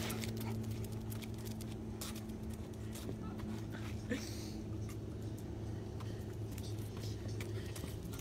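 Light footsteps and the scattered ticks of a small dog's claws on concrete, over a steady low hum.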